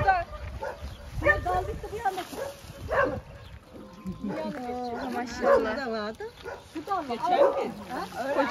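Women's voices calling and talking over one another, with a dog barking and whining among them.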